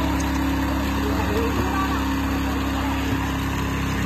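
Engine of a two-wheel walking tractor (power tiller) running steadily in a muddy rice paddy.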